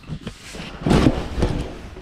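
Plastic skin of an inflatable zorb ball rubbing and crinkling as a person squeezes in through its opening, with dull thumps of his body against it, loudest about a second in. Heard from inside the ball.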